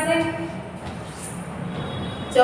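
A woman's drawn-out, sung-like vowel trails off about half a second in. Then quieter scratching follows: chalk drawn across a chalkboard as straight lines are ruled.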